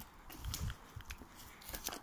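Footsteps crunching on rough ground, a few uneven steps with sharper clicks near the end.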